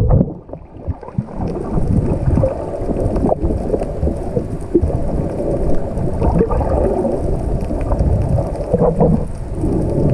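Underwater noise picked up by a submerged camera while snorkeling: a continuous low rumble of moving water with dense crackling and ticking. It drops away briefly near the start, then builds back.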